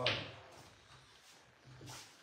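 The hissy end of a spoken word, then a faint steady low hum of background room tone, with one short soft noise near the end.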